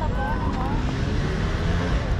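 Steady low rumble of wind on the microphone, with people talking in the background during the first second or so.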